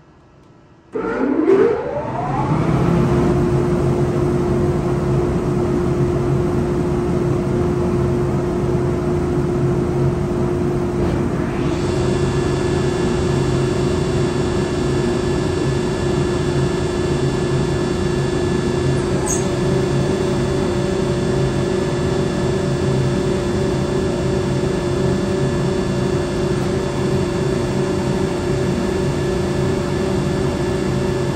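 Motors of a Woodmizer MP360 four-sided planer starting one after another. The first starts suddenly about a second in with a rising whine as it spins up, another joins about twelve seconds in and a third about two-thirds of the way through, and they then run together in a steady hum.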